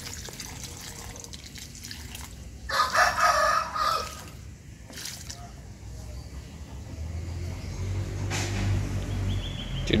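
A rooster crows once, loud and clear, about three seconds in, over the soft splash of fertiliser solution being poured from a bucket onto the soil of a potted plant. Near the end a low engine hum grows steadily louder.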